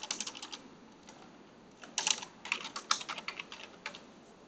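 Computer keyboard typing: a short run of quick keystrokes, a pause of about a second and a half, then a longer burst of keystrokes about halfway through.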